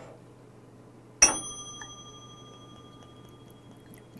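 A Korean brass (yugi) soju cup struck once, ringing with several clear high tones that fade away over about two to three seconds. The ring is called "so good".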